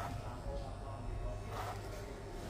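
Corded electric hair clippers buzzing steadily, with two short brushing strokes about a second and a half apart as they cut wet hair over a comb.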